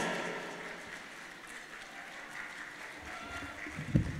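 Light applause from a dinner audience. The end of the last sung phrase dies away over the first second.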